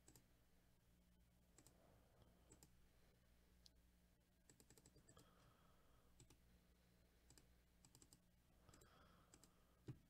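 Near silence with faint, scattered clicks from a computer mouse and keyboard, some coming in short runs, over a faint low hum.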